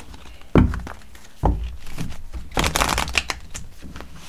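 A tarot deck being shuffled by hand: the deck is knocked on the cloth-covered table three times with dull thumps, then a longer rattle of cards flicking together from about two and a half to three and a half seconds in.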